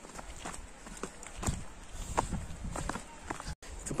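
Footsteps of hikers walking down a dry, rocky dirt trail: irregular crunches and scuffs of shoes on loose soil and stones, about one or two a second.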